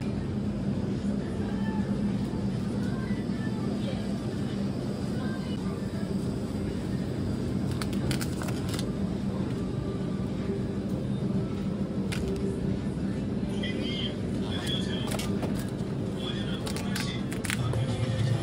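Supermarket ambience: a steady low hum under indistinct voices, with a few sharp clicks about eight seconds in and again near the end.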